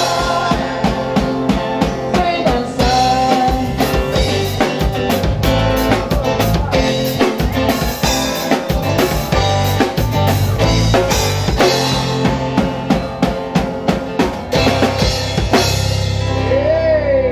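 Live band playing an instrumental passage without singing: a drum kit with kick, snare and cymbals keeping a steady beat under electric and acoustic guitars.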